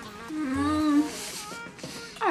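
A woman humming a closed-mouth 'mmm' with a mouthful of food, one held note of under a second: a sound of relish at how good it tastes. Soft background music runs underneath.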